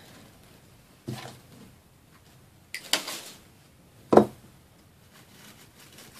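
Craft supplies and tools being handled on a tabletop: three short knocks and clatters, the loudest a sharp knock about four seconds in.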